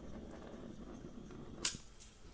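A single short, sharp click about one and a half seconds in, over a quiet room background.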